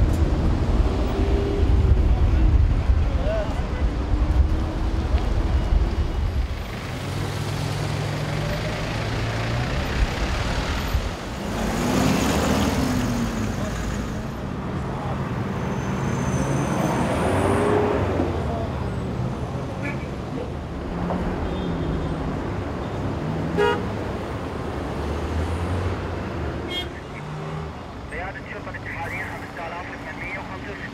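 Road traffic: vehicle engines running, with heavy low engine rumble at first, then vehicles passing close by, the loudest passes about twelve and seventeen seconds in.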